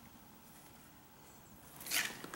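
Quiet room tone, then a brief rustling scrape near the end as a motorcycle throttle cable in its casing is picked up and moved.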